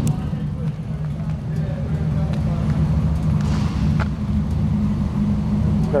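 Steady low rumble of an idling engine, with a single sharp click about four seconds in and faint voices underneath.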